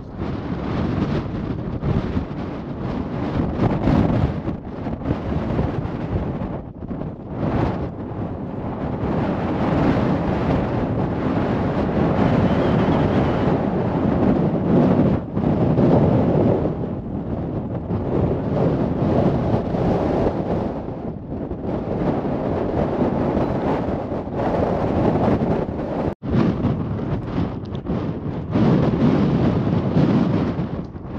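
Strong gusty wind buffeting the camera microphone, a deep rumbling roar that swells and eases, broken by a couple of sudden momentary drop-outs.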